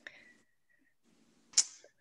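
A quiet pause on a video call: faint room noise, then one brief, sharp burst of noise about a second and a half in.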